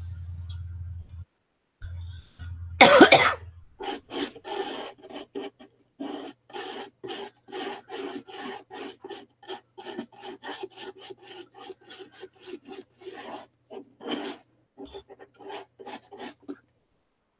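A cough about three seconds in, then a long run of short rasping rubbing strokes, several a second, as a round bath-bomb mold packed with powdery mixture is pressed and twisted between the hands.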